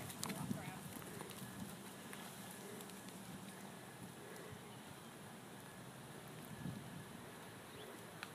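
Horse walking on arena sand, its hoofbeats soft and faint, growing fainter as it moves away.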